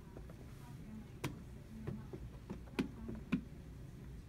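A handful of light, sharp clicks and taps at irregular intervals as a person shifts his weight and grips the edge of an office desk, over a low room hum.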